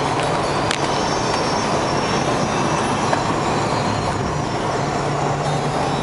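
Cabin noise of a 1998 Ford E-350 van cruising at highway speed: steady tyre and road rumble with the low hum of its V10 engine, and one brief click under a second in.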